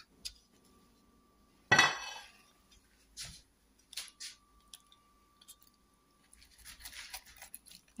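Rolling pizza cutter scraping and crunching through a crisp thin pizza crust on a wooden board, in faint scattered strokes that thicken near the end. A single sharp, briefly ringing knock about two seconds in is the loudest sound.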